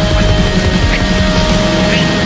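Black metal music: distorted guitars over fast, dense drumming, with a steady held tone.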